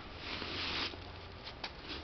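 Crumpled tissue-paper shoe stuffing crinkling as it is handled and pulled from a new sneaker. There is about half a second of rustling, then a single light tap.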